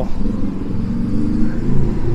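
A motor vehicle's engine running close by: a steady low hum.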